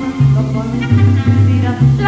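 Mariachi band playing an instrumental passage of a ranchera: a deep bass line stepping from note to note under sustained melody lines and strummed guitars.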